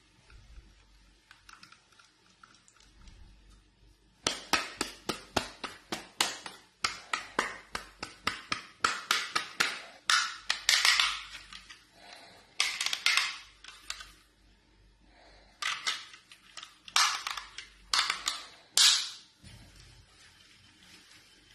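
Plastic clamp of a ROBOT RT-MH02 motorcycle phone holder being worked by hand, giving runs of quick sharp clicks and rattles, several a second. The clicking starts about four seconds in and comes in bursts with short pauses between them.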